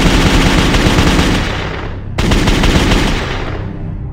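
Machine-gun fire sound effect: a long rapid burst that fades away, then a second burst a little over two seconds in, also fading.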